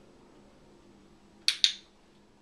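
Dog-training clicker pressed once, giving its quick double click about a second and a half in. The click marks the puppy looking up at the handler, the signal that a treat follows.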